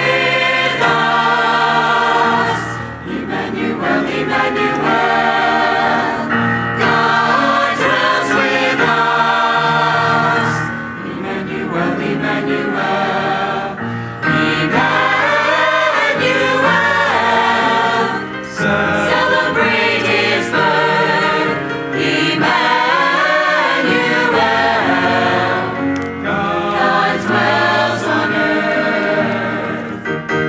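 Church choir of men's and women's voices singing a piece from a Christmas cantata.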